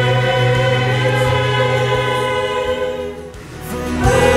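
A church choir singing a long held chord that fades away about three seconds in.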